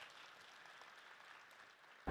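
Near silence, with the last faint traces of audience applause dying away at the start.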